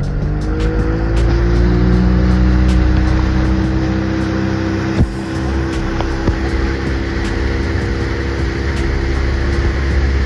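Speedboat engine revving up during the first second or so as the boat pulls away under load with riders in tow, then running steadily at speed, with water rushing past the hull.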